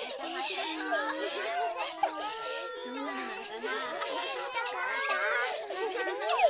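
Crowd chatter from a group of cartoon characters: many high-pitched voices talking over one another at once, with no single clear line of speech.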